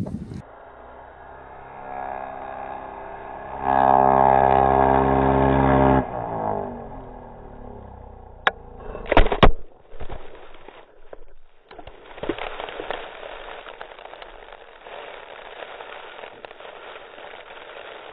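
Snowmobile engine running at high revs, loudest between about four and six seconds in, then cutting off suddenly. A few sharp knocks follow around nine seconds in as the sled crashes, then a steady hiss to the end.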